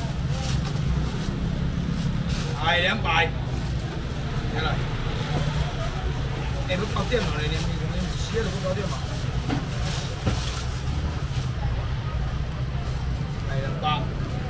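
Busy market stall ambience: a steady low rumble with voices of people talking nearby, one voice standing out briefly about three seconds in and again around seven seconds.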